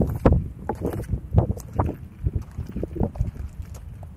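Footsteps crunching on a dry gravel trail, a few a second and uneven, with wind buffeting the microphone.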